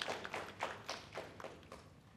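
Scattered applause from a small group clapping, thinning out and dying away about a second and a half in.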